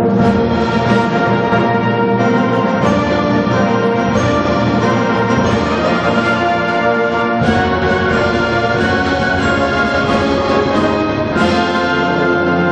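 Concert wind band of brass, saxophones and clarinets playing held full-band chords, the harmony shifting to a new chord about every four seconds.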